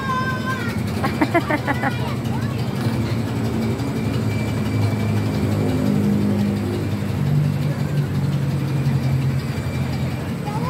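A turning carousel's low, steady drone, with a brief voice about a second in.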